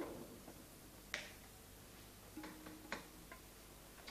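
A few faint, sharp clicks on a computer keyboard, about five in all and unevenly spaced, the sharpest about a second in and again near three seconds.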